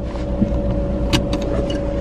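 Steady low rumble of a car heard from inside the cabin, with a faint steady hum over it and a few sharp clicks a little after one second in.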